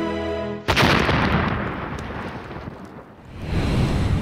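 Soft background music cut off about a second in by an explosion sound effect: a sudden loud blast that dies away over about two seconds, then swells into a second rumble near the end.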